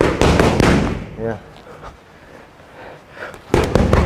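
Boxing gloves smacking into focus mitts: a quick run of punches in the first second, then another burst of hits near the end.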